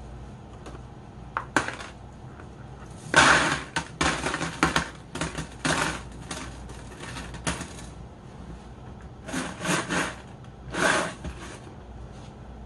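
Decorations being placed and shifted inside an empty glass fishbowl on gravel, a run of short scraping, clinking and rattling noises in several bunches.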